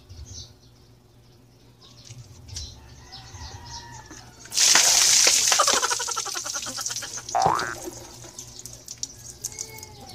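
A bucketful of ice water is dumped over a person about halfway through: a sudden loud splash that pours and drips away over a few seconds. A short rising squeal follows near the end of the splash.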